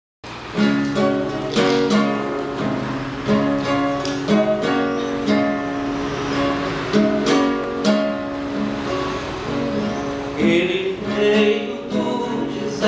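Acoustic guitar strumming and picking chords in a rhythmic pattern, starting suddenly just after the beginning. Near the end a voice joins in singing.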